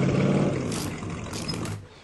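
Motorboat engine running at a steady low hum, with a couple of brief hissing rushes, cutting off abruptly near the end.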